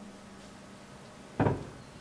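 One short thump through the PA microphone about one and a half seconds in, the sound of the microphone being handled as it is passed over; otherwise low room tone.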